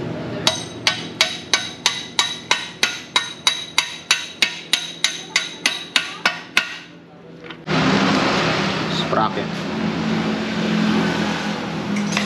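A hammer striking metal in an even series of about twenty ringing blows, about three a second, during work on a motorcycle. The blows stop after about six and a half seconds. Just before eight seconds a steady noisy sound with a low hum starts abruptly.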